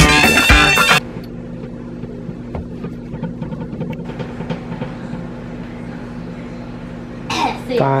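Background music for about the first second, then a microwave oven running with a steady low hum as it heats.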